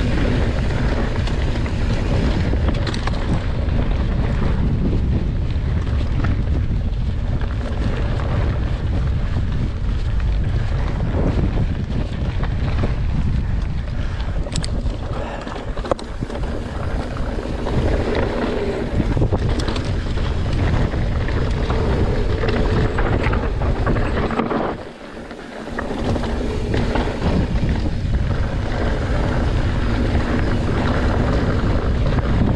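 Wind rushing over the microphone of a mountain bike descending a rough trail at speed, with the rattle of the bike over the ground. The noise briefly drops off about 25 seconds in.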